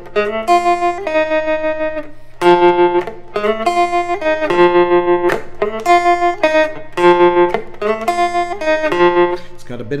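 Fender Stratocaster electric guitar on the neck pickup, through a tremolo pedal set high, playing a single-note blues melody line over a dominant 7 chord in F. The melody comes in short repeated phrases with a brief pause near two seconds, and the notes pulse with the tremolo.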